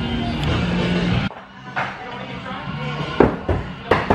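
Music playing, cutting off abruptly about a second in. Then a few sharp knocks of thrown axes striking the wooden target boards, the loudest about three seconds in.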